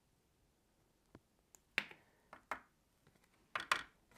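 Several light taps and knocks of a plastic jar of white embossing powder being shaken and tipped over inked cardstock above a plastic tray, starting about a second in, with the loudest ones near the middle and the end.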